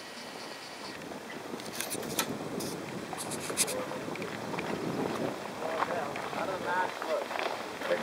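Voices of several people talking indistinctly over a steady outdoor hiss and wind on the microphone, with a few sharp clicks about two to four seconds in; the voices grow clearer near the end.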